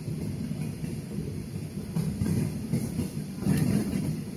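Low, uneven rumble inside an airliner cabin as the plane taxis, with irregular bumps from the wheels rolling over the pavement, a little louder near the end.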